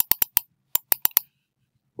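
Computer mouse button clicking about eight times in two quick runs of four, sharp and separate.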